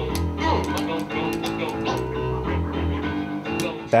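Vinyl record being scratched by hand on a turntable over a music loop, with pitch sweeping up and down as the record is pushed back and forth. Deep bass notes come in near the start and again about two and a half seconds in.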